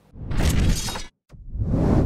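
Two editing transition sound effects. The first is a harsh noisy burst that cuts off suddenly about a second in; after a brief silence, a second noise swells up toward the end.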